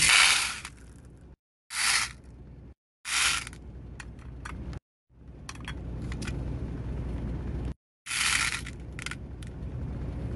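Green agate stone beads poured from small dishes into a clear bowl, rattling in four short bursts, with a few single clicks of beads in between. The sound breaks off into several abrupt silent gaps.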